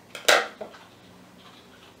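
Twine being cut: one short, sharp snip about a third of a second in, with a couple of faint clicks around it.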